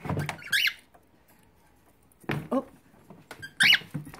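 Cockatiel giving two short, high chirps, one about half a second in and a louder one near the end.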